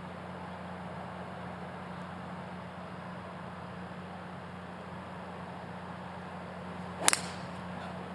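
Golf club striking the ball on a tee shot: a single sharp crack about seven seconds in, over a steady low hum of outdoor background noise.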